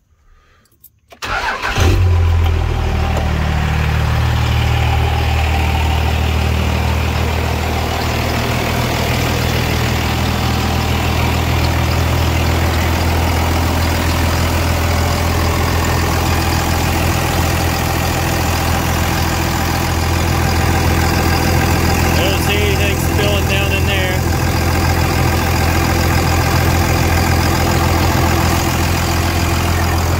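Dodge Ram pickup's Cummins turbo-diesel inline-six cranking briefly and catching about a second and a half in, then idling steadily.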